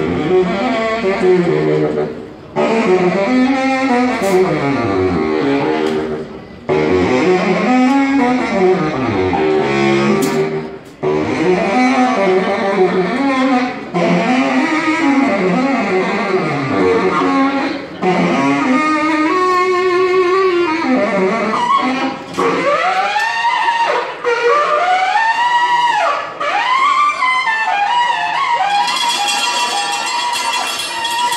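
Saxophone and drum kit playing live, the saxophone in phrases of sweeping runs that rise and fall in pitch, with short breaks between phrases every few seconds.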